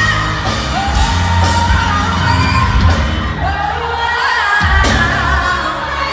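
Pop song with a woman's voice holding long, high sung notes over a band backing of bass and drums; the notes are offered as a D5 sung from the diaphragm with a neutral larynx, forward placement and minimal tension.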